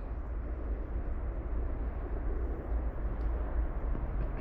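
Steady low rumble of a distant freight train approaching at full throttle.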